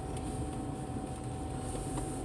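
A car's engine and tyre noise heard from inside the cabin while driving slowly: a steady low rumble with a faint constant hum above it.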